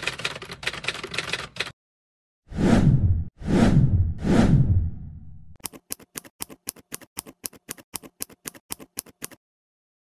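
Animated title-card sound effects: a rapid run of typewriter keystroke clicks as on-screen text types out, then three whooshes, then an even series of about five clicks a second that stops shortly before the end.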